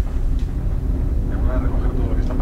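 A pause in speech filled by a steady low rumble of background room noise, with a faint murmured voice sound about one and a half seconds in.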